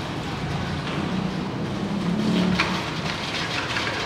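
Steady low rumbling background noise, with a few faint clicks in the second half.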